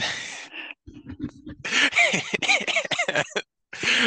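A person laughing: a sharp breath, then a run of short high-pitched laughs, several a second, that rise and fall in pitch.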